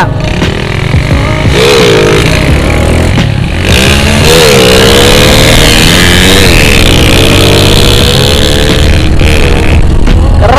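Motorcycle engines running at road speed, with heavy wind rush on the bike-mounted camera's microphone. The engine pitch rises and falls with the throttle, and the sound gets louder from about four seconds in.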